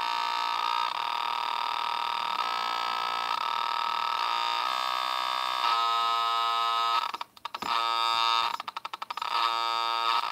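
Atari Punk Console-type square-wave synth kit giving a harsh, buzzy electronic drone. Its pitch steps between settings as the knobs are turned, and from about seven seconds in the tone breaks into a rapid stutter.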